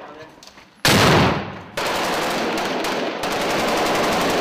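Automatic gunfire in combat: a sudden loud burst about a second in, followed by sustained rapid fire.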